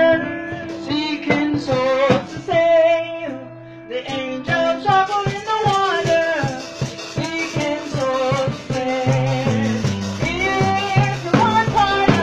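Voices singing a gospel chorus over instrumental backing with a steady percussive beat; a low bass line comes in about nine seconds in.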